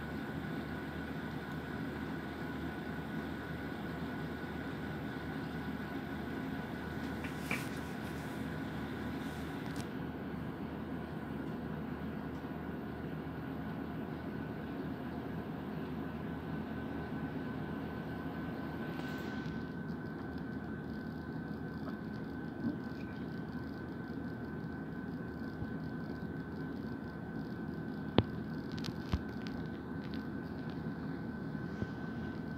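Steady low hum and hiss of background machine noise with a faint high whine, broken by a couple of sharp clicks near the end.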